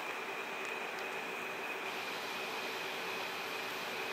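Steady background hum and hiss with a faint high whine, unchanging throughout, with a few faint ticks in the first couple of seconds.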